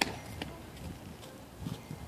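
A sharp metallic clack right at the start and a softer tap about half a second later: a child's hands grabbing the steel rungs of playground monkey bars as he swings off the ladder.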